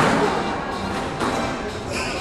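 Squash ball smacked by a racket and knocking off the court walls during a rally. A sharp crack comes right at the start, then softer knocks about a second in and near the end.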